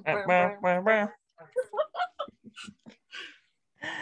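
A person's voice singing a held, sliding phrase for about the first second, then short broken bits of voice.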